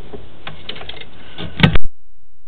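A run of sharp clicks and knocks over a low hiss, ending in one loud knock near the end, after which the sound cuts out almost entirely; handling noise from the sewer inspection camera gear as it is fed down the pipe.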